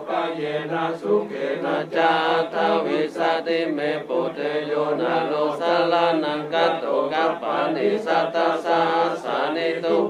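Theravada Buddhist monks chanting Pali paritta verses in unison, a steady, near-monotone group recitation.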